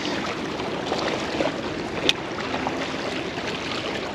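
Small waves lapping and washing against the rocks of a seawall, a steady splashing hiss, with a single sharp click about two seconds in.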